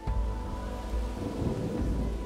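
A thunderstorm with a low rumble of thunder and a steady hiss of rain, starting suddenly at the beginning, over background music with sustained tones.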